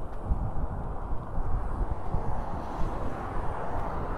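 Outdoor background noise: a steady low rumble and hiss, with irregular low buffeting on the microphone.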